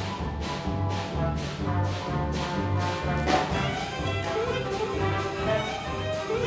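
A brass-led orchestra plays an instrumental jazz dance number, with a steady beat of about two strokes a second. About three seconds in, a pitch glide swoops down and back up.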